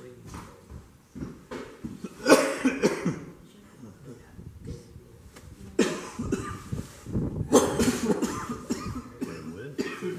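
A person coughing, three sharp coughs about two, six and seven and a half seconds in, over faint murmuring voices.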